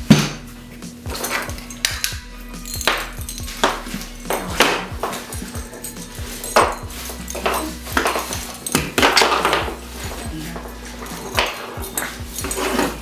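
Irregular knocks, clicks and light rattles of objects handled on a tabletop. There is a sharp knock right at the start as the cut-off pumpkin lid is set down, then smaller clicks and rattles as a string of ball-bulb fairy lights is handled.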